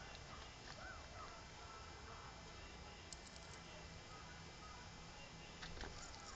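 Near silence: faint background hiss, with a few light clicks about halfway through and near the end.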